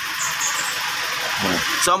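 A steady hiss, with a man's voice starting near the end.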